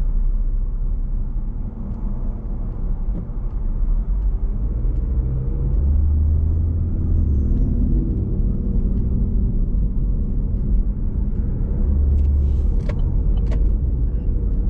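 Cabin noise of a car driving along: a steady low rumble of engine and tyres on the road, its engine note rising and falling a little with speed. A few faint clicks come near the end.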